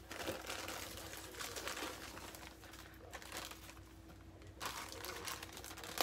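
Packaging crinkling and rustling in an irregular run as items are lifted and handled out of a box, over a faint steady hum.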